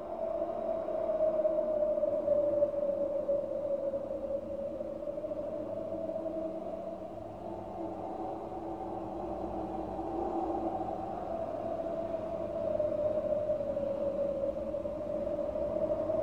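A sustained drone in the album's music. It fades in, holds one slowly wavering pitch with a lower layer beneath it, and cuts off suddenly just after the end.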